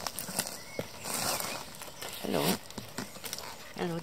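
A baby pine marten eating wet food from a bowl: small, irregular clicks and rustles of chewing and licking, with a short falling murmur of a voice about two seconds in.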